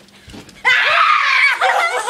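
Girls screaming at high pitch, starting suddenly about two-thirds of a second in, with more than one voice at once and laughter mixed in.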